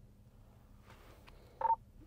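A steady low hum, then one short electronic beep near the end: the two-way radio's talk-permit tone as the hand mic is keyed.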